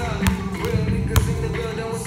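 A basketball bouncing several times on a gym floor, in an uneven rhythm, over hip-hop music with vocals.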